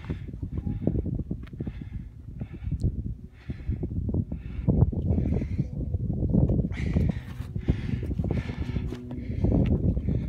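A hiker's footsteps on rocky, snow-dusted ground, about one to two steps a second, over a steady low rumble of wind on the microphone. Both grow louder about halfway through.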